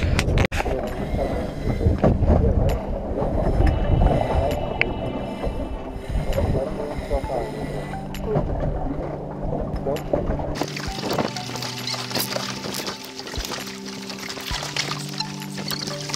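Wind and water noise on a moving boat, with a low rumble, for the first ten seconds or so. Background music with long held notes comes in underneath and takes over abruptly about ten seconds in.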